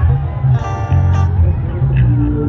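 Kecimol street-band music played loud through a large outdoor sound system: a pulsing bass beat, with a melody note held for about half a second near the middle.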